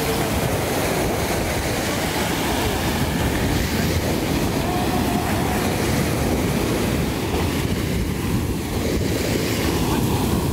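Surf washing up and draining back over a sandy beach: a steady, loud rush of breaking waves with no letup.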